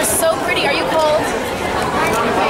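Chatter of several people talking over one another in a crowd, with no clear words.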